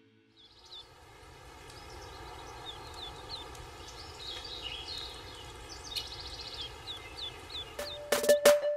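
Small birds chirping in quick, repeated short calls over a soft outdoor background that grows gradually louder, a morning-ambience sound effect.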